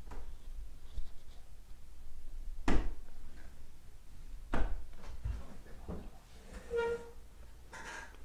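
A few scattered soft knocks and taps of a brush and hand working against a painting canvas on an easel, the loudest about three seconds in, with a brief spoken 'yeah' and a short hum near the end.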